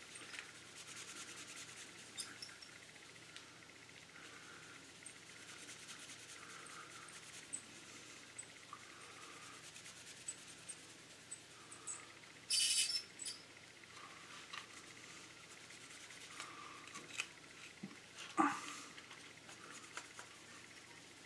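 Microfiber cloth rubbing fine polishing compound over the glossy painted plastic of a scale model car body: a faint, soft scrubbing with small clicks from the handled plastic. There are two louder brief scuffs, one about two-thirds of the way through and one near the end.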